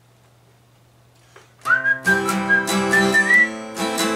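A whistled melody over guitar music starts about a second and a half in, the first note sliding up into pitch. Before it there is only a quiet low hum.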